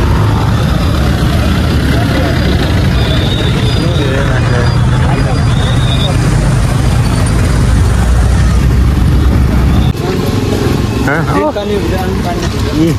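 Busy street traffic with a crowd: vehicle engines running and people talking, with a heavy low rumble throughout and a few short high-pitched tones. About ten seconds in the sound changes and a voice speaks clearly.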